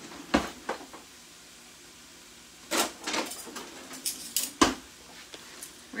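Kitchen clatter: sharp knocks and clicks of utensils being handled, with a cluster about three seconds in and a single loud knock near five seconds, as metal tongs are fetched.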